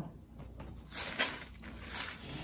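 Thin paper pages of a Bible rustling as they are turned, starting about halfway through, with one sharper crackle.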